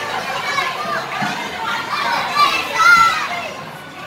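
A crowd of young children chattering and calling out over one another, with one high voice loudest about three seconds in.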